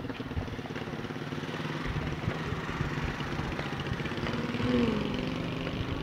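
Police motorcycle engine idling steadily, slowly growing louder over the first five seconds.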